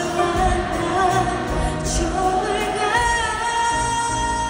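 Live pop music: a female singer with a band, heard from the audience. A long held note comes in about three seconds in.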